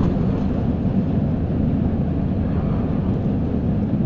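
Steady low rumbling noise with no events standing out, heard through a muffled, covered phone microphone.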